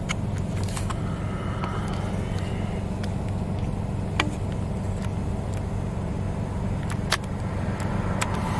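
A car engine idling steadily, heard from inside the cabin, with a few faint clicks, one about four seconds in and another near seven seconds.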